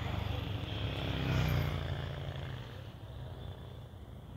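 A motorcycle engine passing on the road: a low engine note that swells to its loudest about a second and a half in, then fades away.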